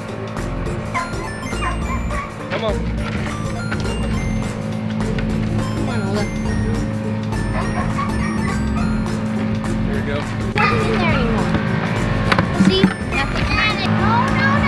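A steady, unchanging engine drone from the tree crew's machinery working nearby. Short wavering calls come over it near the end.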